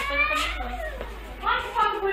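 High-pitched voices: a rising, drawn-out call at the start, then more short high-pitched vocal sounds near the end.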